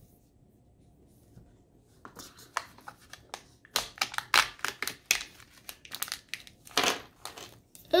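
Small plastic toy wrapper from a Kinder Joy egg being crinkled and torn open by hand. It is a run of irregular crackles that starts about two seconds in, after a quiet start.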